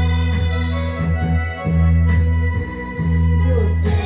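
Electronic keyboard on an organ sound playing held chords over a deep bass, moving to a new chord about every second, with no voice over it.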